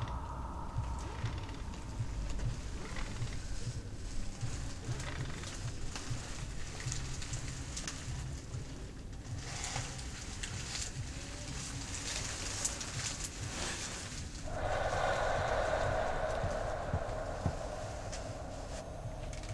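Low, steady rumbling ambience with scattered rustles and clicks. A sustained hum-like tone comes in about fourteen and a half seconds in and holds to the end.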